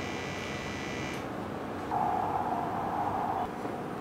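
Two steady machine tones from laboratory equipment: a high-pitched whine that cuts off about a second in, then a lower steady buzzing tone from about two seconds until three and a half seconds.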